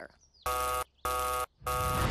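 Three short, harsh buzzer blasts of equal length, evenly spaced, a cartoon sound effect; the third runs straight into a rush of noise.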